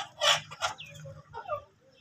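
Backyard desi chickens calling: a few short, loud calls in the first second, then a shorter call falling in pitch about one and a half seconds in.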